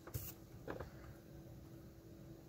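Quiet workbench room tone with a faint steady hum, broken by a brief faint rustle just after the start and a smaller faint tick a little under a second in, as a circuit board and solder wire are handled.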